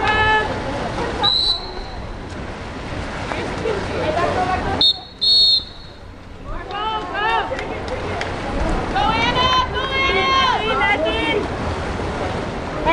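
Referee's whistle at a water polo game: a short blast about a second in, then two loud blasts close together around five seconds in, over spectators' shouting voices.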